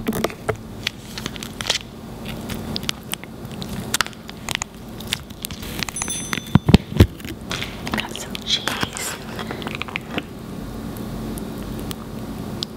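Paper sauce packet crinkling and crackling as cheese sauce is squeezed out onto french fries, in scattered sharp clicks, with a few louder thumps just past the middle.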